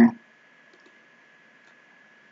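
A few faint computer mouse clicks over low background hiss with a faint steady high whine.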